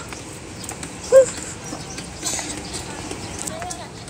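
Footsteps of several people walking down a paved ramp, light scattered steps over a steady outdoor background with faint voices of passers-by. A short spoken "uh" about a second in is the loudest sound.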